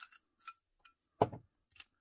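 Small metal earring posts clinking against each other and the glass inside a screw-top glass jar as it is handled: a handful of separate light clicks, with one sharper knock about a second in.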